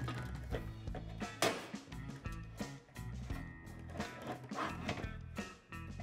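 Soft background music, with a few light clicks and knocks as a dog-house heater is handled and lined up on its metal mounting bracket; the strongest knock comes about one and a half seconds in.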